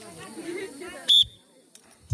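A short, sharp blast on a referee's whistle about a second in, over faint voices.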